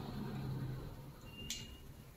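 A single sharp click about a second and a half in, with a brief high ring after it, from a long-nosed butane utility lighter being handled just after lighting a candle.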